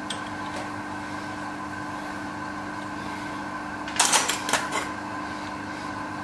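Steady machine hum in a home machine shop, holding several fixed tones. A short cluster of sharp metallic clicks and knocks comes about four seconds in.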